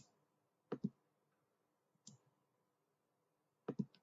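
Computer keyboard keys clicking as code is typed: a pair of keystrokes about a second in, a faint one near two seconds and a quick run of several near the end, with silence between.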